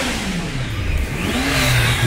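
A vehicle engine in street traffic, its pitch dropping over the first second and then rising again and holding, as it slows and then picks up speed. A rushing noise builds in the second half.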